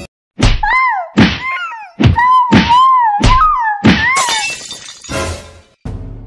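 Added sound effects: a string of loud thuds over a wavering, gliding high tone, ending in a short crashing burst.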